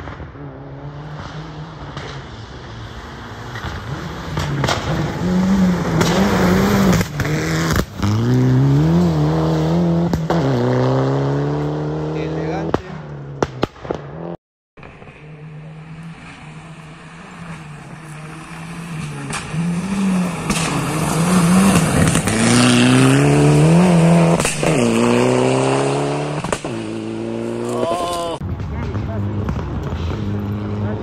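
Rally car engine revving hard on a gravel road, its pitch climbing through each gear and dropping at each shift or lift, over and over. There is a sudden break about halfway through, and then a second run of climbing and falling revs, the highest near the end.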